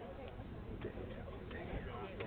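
Indistinct voices of people talking at a distance on an open field, with a few faint clicks mixed in.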